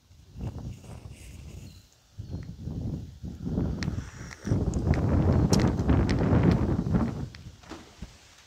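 Rumbling, rustling noise on a wired earphone microphone worn on the chest, with a few light clicks. It is loudest in the second half and fades near the end.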